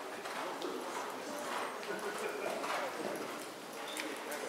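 A horse's hoofbeats at a trot on the sand footing of an indoor arena, with voices in the background.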